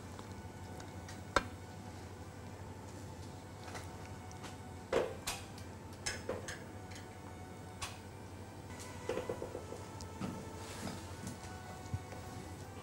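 A few light knocks and clinks against glass mixing bowls as gloved hands press a soaked toast slice into breadcrumbs. Faint background music runs underneath.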